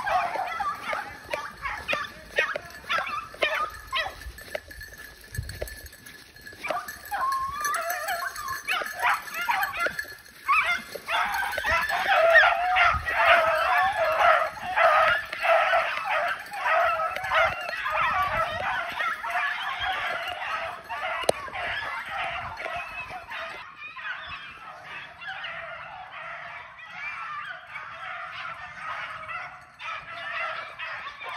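A pack of rabbit dogs baying on a rabbit's trail, the cry of hounds running a rabbit by scent. Scattered yips for the first several seconds give way, from about ten seconds in, to many dogs crying together, which grow fainter over the last few seconds.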